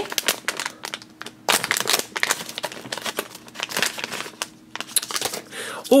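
Shiny foil blind bag crinkling in the hands as it is torn open and worked, a dense run of irregular crackles.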